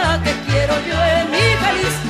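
Music from a Mexican song, in a stretch between sung lines: a wavering melody over a bass line that steps from note to note.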